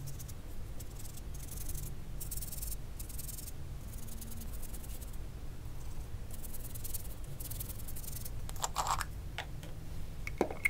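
A flat watercolour brush scrubbing and dabbing paint onto textured watercolour paper in a series of short, raspy strokes. A few sharper clicks and knocks come near the end.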